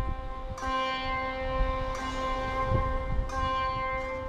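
Peaceful instrumental background music: sustained ringing notes that change pitch every second or two.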